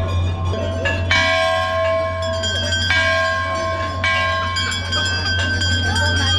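Hanging brass temple bells rung by hand, struck about once every one to two seconds. Each strike rings on with several overlapping steady tones that fade slowly, over a steady low hum.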